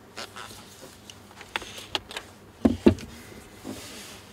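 Handling noise from gloved hands turning a Canon EF 24-70mm f/2.8L USM zoom lens: scattered small clicks and rubbing, with two louder knocks in quick succession a little before three seconds in.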